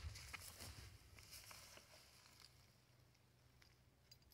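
Near silence, with a few faint soft clicks in the first two seconds that fade out.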